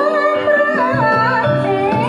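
Javanese gamelan ensemble playing steady ringing metallophone and gong-chime notes over a repeating low drum pulse, with a voice singing a wavering, sliding melodic line above it, accompanying a wayang kulit performance.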